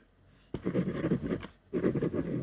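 Ballpoint pen writing on white paper on a desk: after a short pause, a scratchy stroke lasts about a second, and another begins after a brief gap near the end.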